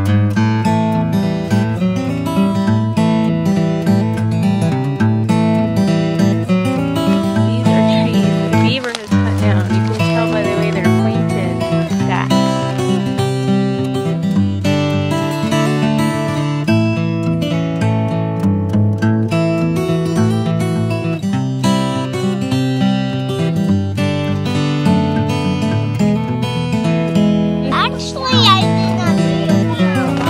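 Background music of a strummed acoustic guitar playing a steady run of chords.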